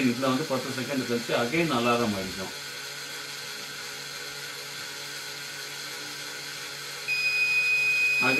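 Small gear motor of a model's wheel running with a steady hum; near the end a piezo buzzer starts a steady, high-pitched beep: the model anti-sleep alarm going off to wake the driver.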